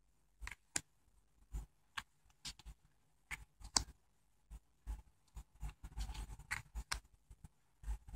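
Tarot cards being flipped and laid one by one on a tabletop: a string of faint, irregular clicks and slides of card stock, more of them close together in the second half.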